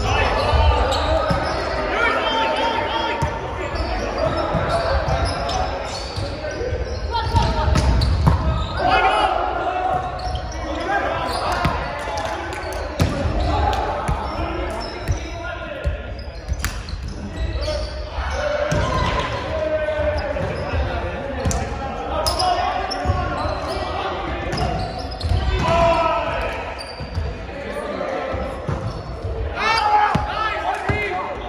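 Indoor volleyball play in a large gymnasium: thuds of the ball being hit and bouncing on the hardwood court, mixed with players' voices calling out, all echoing in the hall.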